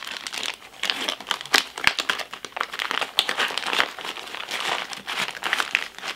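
Crinkling and crackling of sealed plastic chest-seal packets being handled and pushed into a nylon first aid pouch, irregular and continuous.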